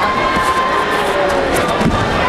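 Spectators and team-mates in a large hall shouting and calling out over the crowd's hubbub, with a single thump near the end as the judo players fall onto the tatami.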